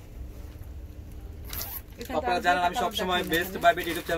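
A brief crinkle of a plastic garment pack being handled, about one and a half seconds in, followed by a man talking.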